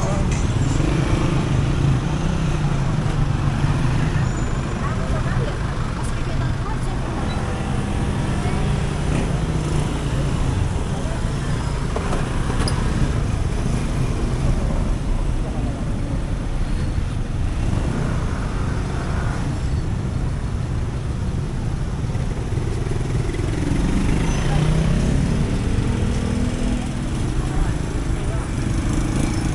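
Busy street traffic: motorcycles, motorcycle-sidecar tricycles and cars running past continuously, with louder close passes near the start and again near the end.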